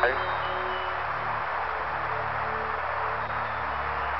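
Steady radio static hiss from the Apollo 11 air-to-ground voice loop as the lunar module nears touchdown, with a low sustained musical drone underneath.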